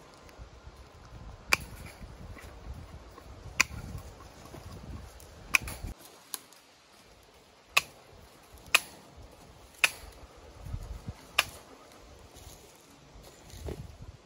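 Tin snips cutting welded-wire fencing: a series of sharp snaps as the blades shear through wire strands, about seven cuts spaced a second or two apart.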